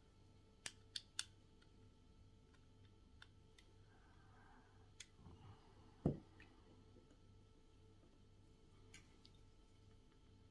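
Near silence with small handling noises from a scale-model engine being assembled by hand: three quick, light clicks about a second in, a few soft ticks, and a duller tap about six seconds in, over a faint low hum.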